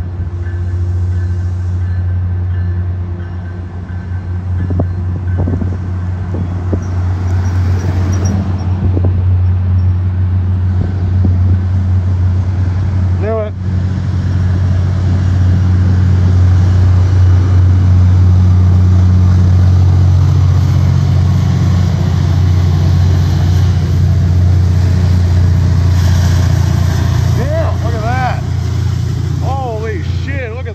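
MBTA F40PH-3C diesel-electric locomotive's EMD 16-cylinder two-stroke diesel working hard as it accelerates a commuter train out of the station: a loud, steady low drone that builds to its loudest about halfway through. The heavy throttle is marked by thick dark exhaust smoke.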